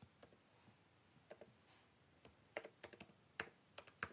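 Faint typing on a computer keyboard: irregular keystrokes, sparse at first and coming more often in the second half.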